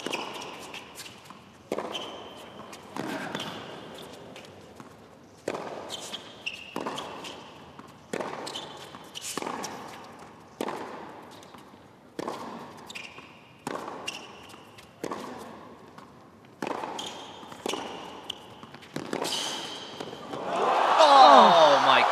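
Tennis ball struck back and forth by rackets in a long baseline rally, a sharp echoing hit about every second or so. Near the end a crowd breaks into loud cheering and applause as the point is won.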